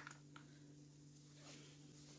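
Near silence: faint room tone with a steady low hum and a couple of faint soft ticks.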